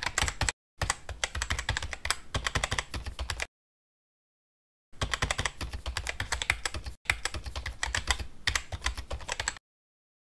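Computer keyboard typing sound effect: rapid key clicks in runs, broken by abrupt silences, the longest about a second and a half in the middle.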